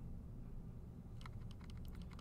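Faint computer keyboard keystrokes, a quick run of clicks starting a little past halfway, over a low steady hum.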